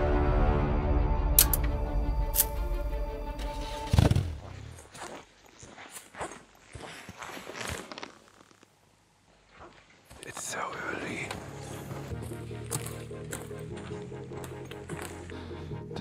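Dark, dramatic intro music that ends on a hit about four seconds in. Then a few quiet seconds of scattered clicks and soft, low speech, followed by a steady low hum for the last third.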